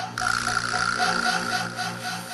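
Electronic music breakdown from a live mixer-and-laptop set: the full beat drops out, leaving a fast, even rattling pulse of about five beats a second under a held tone.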